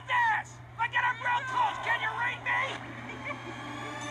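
Animated characters' voices, played on a TV and recorded off its speaker, over a steady low hum; the voices stop about three seconds in.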